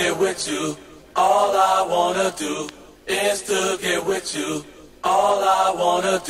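A voice from a house music mix in short pitched vocal phrases, one about every two seconds, with brief pauses between them.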